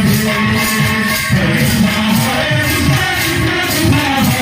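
Live kirtan devotional music: a man singing into a microphone over drums and jingling percussion, with a steady beat and no pause.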